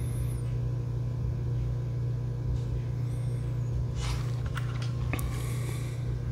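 A steady low hum, with a couple of faint clicks about two-thirds of the way in.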